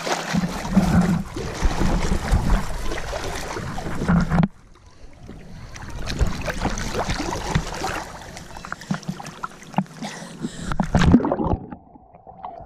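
Small lake waves lapping and slapping against a GoPro held at the water's surface, with wind on the microphone. Near the end the camera goes under and the sound turns dull and muffled.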